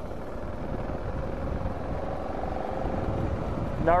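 BMW G 650 GS Sertao's single-cylinder engine running at a steady cruise, mixed with wind rush on the camera microphone.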